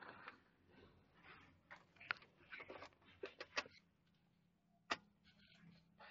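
Near silence with a few faint clicks and knocks: a car key being put into the ignition and turned to on. The diesel engine is not yet running; the dashboard warning lights are lit and the tachometer reads zero.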